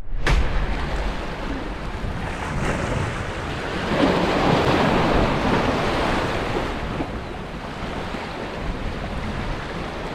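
Ocean surf washing and breaking against the boulders of a rock jetty, with wind buffeting the microphone. The wash swells louder about four seconds in and eases off again.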